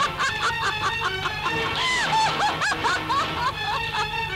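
Film-score music under a woman's high-pitched laughter, a quick run of short rising-and-falling peals.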